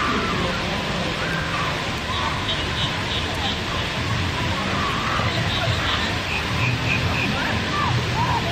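Steady rush of water falling down a stone fountain wall, with faint voices and chatter of people over it.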